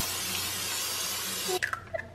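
Hot oil hissing steadily in a nonstick frying pan, then a few sharp clicks near the end as an egg is cracked against the pan.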